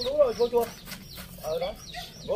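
Chickens clucking in short rising-and-falling calls: a quick run at the start, then a few scattered clucks.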